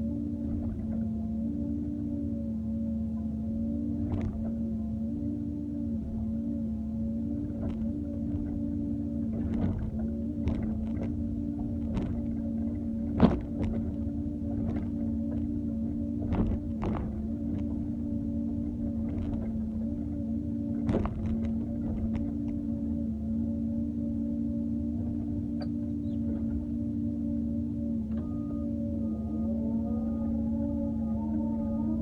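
Doosan 140W wheeled excavator's engine and hydraulics running with a steady humming whine as the bucket works soil, with scattered knocks and clunks from the bucket and linkage, the sharpest about 13 seconds in.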